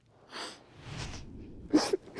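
A person crying: sniffles and breathy sobs in three short bursts, the last and loudest with a brief voiced sob.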